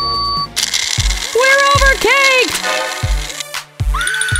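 Domotec stainless-steel kitchen blender switched on, a loud noisy whir starting about half a second in and cutting off shortly before the end. Background music with a pulsing bass beat runs under it, and two drawn-out vocal exclamations sound over the whir.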